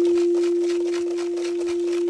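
A crystal singing bowl ringing on one steady, sustained tone, with a faint higher overtone; it fades a little in the middle and swells back.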